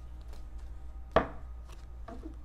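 A deck of tarot cards being shuffled by hand: a few faint ticks, then one sharp slap of the cards about a second in.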